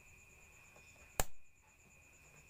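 A single sharp click from the clear plastic enclosure's lid being handled, about a second in. Under it run faint, steady high-pitched tones, one pulsing evenly.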